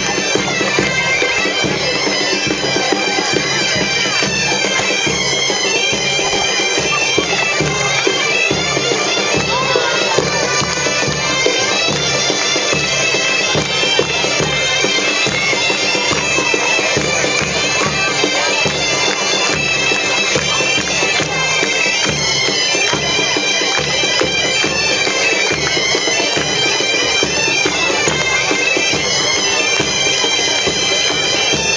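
A band of Galician gaitas (bagpipes) playing a tune together, with a drum beating a steady rhythm underneath.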